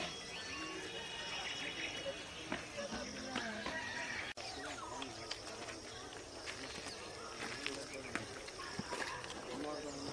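Faint, distant voices of several people talking, with short bird chirps early on and a steady high insect drone. The sound drops out briefly a little over four seconds in.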